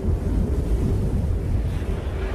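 Sandstorm wind buffeting the microphone, a low, uneven rumble.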